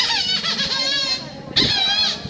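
Squeaky voice of the Sweep dog puppet, made with a squeaker: high-pitched, wavering squeaks in two stretches with a short break about one and a half seconds in.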